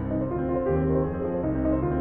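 Solo piano playing a Baroque harpsichord piece: a fairly soft passage of steady, evenly moving notes in the low and middle range.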